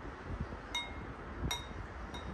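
Metal spoon clinking twice against a soup bowl as it scoops up soup, each clink ringing briefly.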